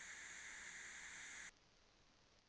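Faint, steady hiss of a TIG welding arc on steel plate, cutting off abruptly about one and a half seconds in.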